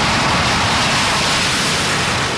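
Steady, loud rushing noise, even from low to high pitch, with no tone or rhythm in it.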